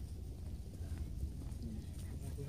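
Footsteps on a paved path over a low, uneven rumble on the phone's microphone, with faint voices of other walkers.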